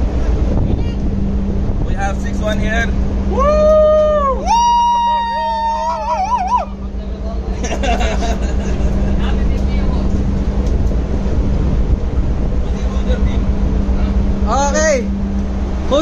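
Steady low drone of a ship's engines running at sea, with voices over it, one of them holding two long drawn-out notes about three to six seconds in.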